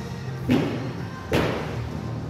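Two heavy thuds, a little under a second apart, as an athlete drops from a pull-up bar and lands on a rubber gym floor, with music playing underneath.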